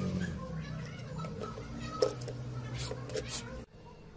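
Sharp clicks and taps of small loudspeakers being handled and seated in a plastic radio-cassette casing, the loudest about halfway through. Under them runs a low, drawn-out, voice-like sound that cuts off abruptly near the end.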